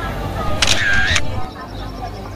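People chatting outdoors, and about a third of the way in a smartphone camera shutter sound plays once, briefly and louder than the voices.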